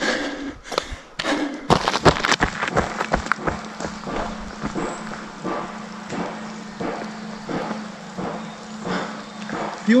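A runner's footsteps and bumps on a body-worn microphone, irregular knocks in the first few seconds, then a steadier hiss with faint scattered ticks as rain begins to fall.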